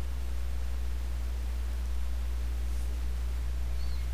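Steady low hum with a faint even hiss, unchanging throughout, with no distinct knocks or events.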